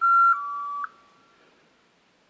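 Electronic beep in two steady tones, a higher one for about a third of a second dropping to a slightly lower one, ending just under a second in and trailing off briefly.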